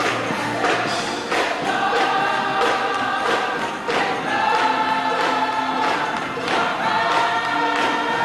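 Gospel choir singing long held notes in harmony, with hand clapping on a steady beat.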